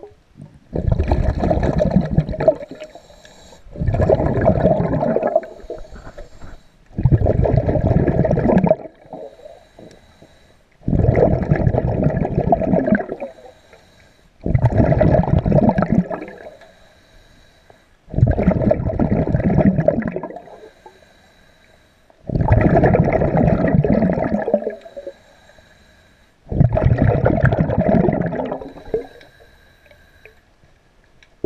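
A diver's exhaled breath bubbling out of the breathing regulator underwater, close to the microphone. There are eight long bubbling bursts, one about every four seconds, with quieter pauses between them.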